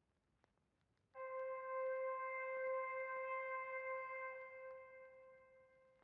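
A single sustained electronic note at C5, about 520 Hz, played back from an FL Studio piano roll: it starts about a second in, holds steady and fades out gradually over the last couple of seconds.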